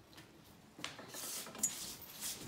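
A fold-out sofa bed's metal frame being lifted and unfolded: a click a little under a second in, then rubbing of the frame and mattress cover, and another click.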